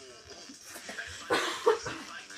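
A person close to the microphone coughs twice in quick succession, a little over a second in, loud over the music playing from the television.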